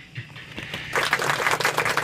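A sooty-headed bulbul beating its wings on a hand, a quick dry fluttering of feathers that starts about a second in.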